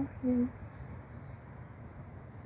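A woman's voice giving two short hums at the very start, like a wordless 'mm-hm', then only a steady low background rumble.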